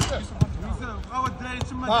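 Footballs being kicked in a passing drill: several sharp thuds of boot on ball, with short shouts from players and coach.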